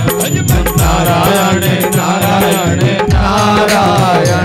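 Devotional bhajan music, a flowing melody over a steady drum beat whose low strokes fall in pitch, with the audience clapping along in rhythm.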